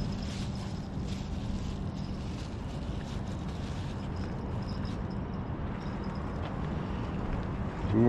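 Steady outdoor background noise, like wind on the microphone and distant engines, with a faint low hum during the first three seconds.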